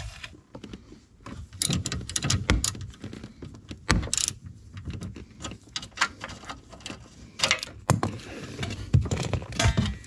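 Ratchet wrench with an 8 mm socket working screws out of a car's under-dash trim panel: irregular metallic clicks and rattles in several short runs, with a sharp knock about four seconds in.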